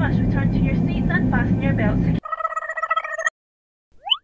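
Airliner cabin announcement over the steady low drone of the engines, breaking off about two seconds in. A steady tone follows for about a second and stops abruptly, and a short rising glide comes right at the end.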